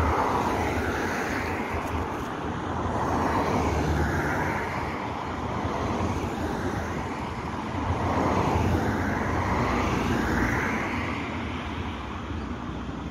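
Road traffic: cars passing one after another, their tyre and engine noise rising and falling in slow swells, over a steady low hum.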